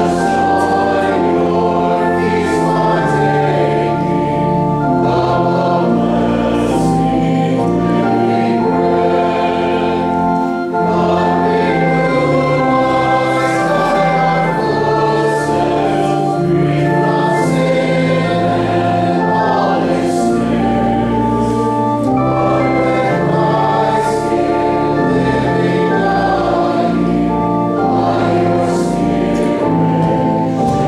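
Congregation singing a hymn with pipe-organ-style organ accompaniment: many voices with held organ chords and deep bass notes, changing note by note at a steady, even pace.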